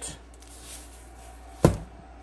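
Faint hiss of salt being sprinkled over raw steak cubes in a plastic container, then one sharp knock about one and a half seconds in.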